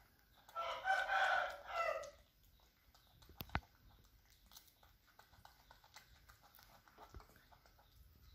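A rooster crowing once, starting about half a second in and lasting about a second and a half, with a short break near its end.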